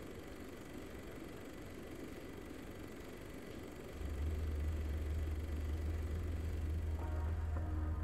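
Soundtrack of the music video playing: a steady low car-like rumble, joined about halfway by a loud deep hum, with the song's first clear musical notes starting near the end.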